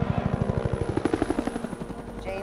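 Helicopter rotor beating overhead, a fast even pulse of about a dozen beats a second that gets quieter near the end.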